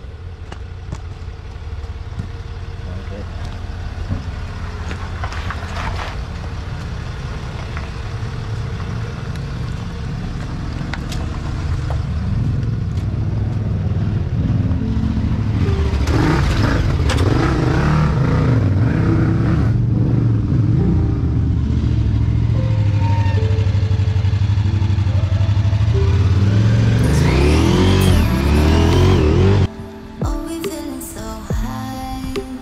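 Land Rover Discovery 4 engine pulling the vehicle up a rocky track, growing steadily louder, with tyres crunching over loose stones and the revs rising and falling near the end.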